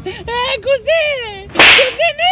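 A man's voice wailing in a high, wavering pitch. About a second and a half in, it is cut across by a short, very loud swish.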